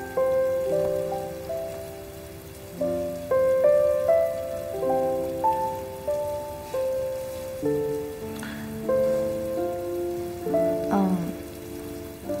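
Soft background score: a slow, gentle melody of single held notes, each starting softly and fading, one or two new notes a second.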